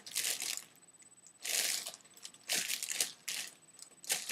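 Deflated foil balloons crinkling as they are handled and squeezed, in a few short bursts.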